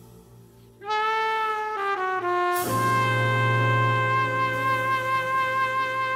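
Slow, ethereal Nordic jazz from a trio recording. After a soft lull, a sustained melodic instrument enters about a second in, steps down through a few notes, then holds one long note over a deep sustained bass tone.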